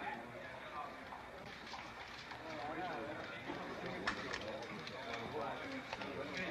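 Indistinct talking in the background, too unclear to make out words, with a sharp click about four seconds in.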